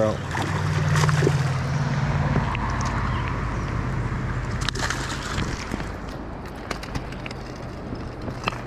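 A hooked rainbow trout splashing and sloshing at the water's surface as it is drawn in to a landing net, loudest in the first couple of seconds and then easing off. A steady low hum runs underneath, and a few sharp clicks come in the second half.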